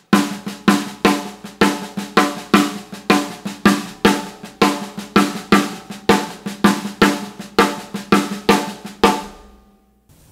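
Snare drum played with sticks in a paradiddle, the right-hand strokes accented and the left-hand strokes played as soft ghost notes, at a steady tempo. The playing stops near the end and the drum rings out briefly.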